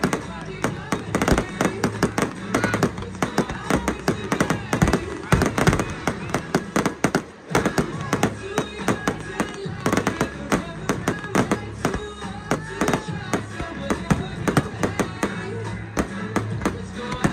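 A firework display's aerial bursts: many sharp bangs and crackles in rapid succession, several a second, easing briefly about seven seconds in. Music with a steady beat plays underneath.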